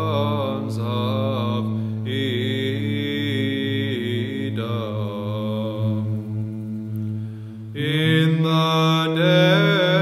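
An Orthodox church hymn chanted by a monastic choir, the melody sung over a steady low held note. The melody thins out around six to seven seconds in. At about eight seconds the voices come back in fuller and the held note steps up to a higher pitch.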